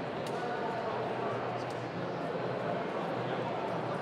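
Many people talking at once in a room: steady crowd chatter with no single voice standing out, and a few faint clicks.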